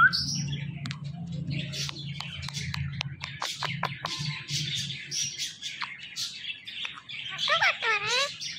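Indian ringneck parakeet chattering close to the microphone: soft chirps and squeaks, with a run of sharp clicks in the middle, and bending pitched calls like its mimicked talking near the end.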